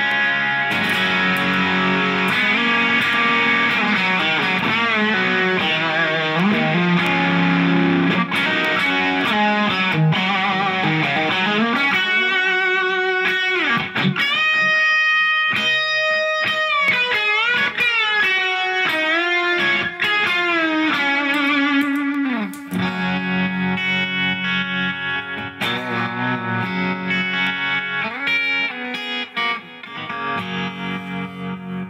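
Electric guitar, a Telecaster fitted with Bootstrap Pretzel pickups played through a Line 6 Helix amp modeller. It plays full chords, then about twelve seconds in a single-note lead with string bends and vibrato, then back to choppy, clipped chords near the end.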